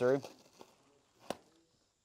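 A word of speech, then one short, sharp click a little over a second in as a tourniquet strap is pulled through on an improvised pelvic binder.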